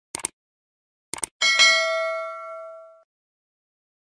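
Subscribe-button animation sound effect: a quick double mouse click, another double click about a second later, then a notification bell dings once and rings out, fading over about a second and a half.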